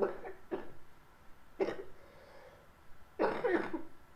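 A girl coughing behind her hand: several short coughs spread through a few seconds, the last one longer and voiced.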